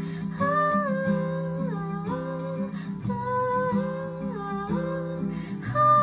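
A woman singing long, drawn-out notes over a strummed acoustic guitar, swelling louder near the end.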